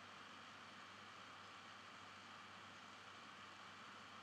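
Near silence: steady room tone and microphone hiss with a faint low hum.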